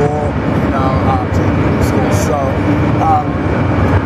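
A person talking over a loud, steady low rumble of background noise.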